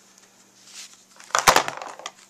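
A rubber stamp pressed down onto cardstock on a tabletop: a faint rustle, then a brief cluster of knocks with one sharp thump about a second and a half in.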